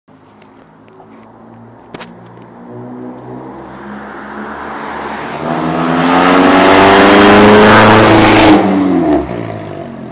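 A straight-piped Honda B18B1 1.8-litre four-cylinder, as fitted to the Acura Integra, accelerating hard past. It grows steadily louder as it approaches and is loudest for a couple of seconds as it goes by. The note drops off abruptly near the end and fades away.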